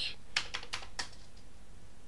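Commodore 128 keyboard keys clicking: about five quick keystrokes in the first second as RUN is typed and entered, then the typing stops.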